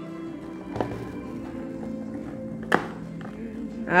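Background music with long held notes. A light click about a second in and a sharp snip near the end come from scissors cutting at a toy's plastic packaging.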